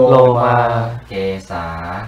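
A man's voice slowly chanting the Pali meditation words, ending the reverse sequence with "…lomā, kesā" (body hair, head hair), each syllable held long on a steady pitch. This is the recitation of the five basic objects of meditation given at ordination.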